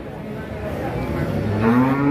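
A cow mooing: a long low call that swells and rises in pitch in the second half.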